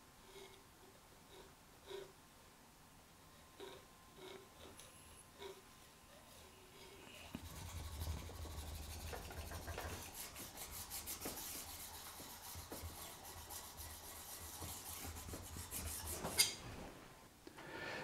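Palette knife scraping oil paint across a painting board in quick, repeated strokes: a few faint touches at first, then a continuous scraping from about halfway through, ending with a short knock.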